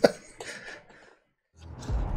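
One short, sharp laugh, like a single cough, at the very start, fading within about half a second; a moment of dead silence follows just after the middle.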